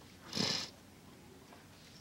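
A single short, loud breath through a person's nose, a sniff about half a second in, over the quiet of the room.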